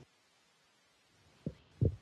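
Over a second of dead silence, then two short, dull low thumps about a third of a second apart, the second the louder, typical of a handheld microphone being bumped as it is handled.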